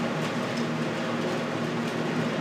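Window air conditioner running: a steady low hum under an even rush of air.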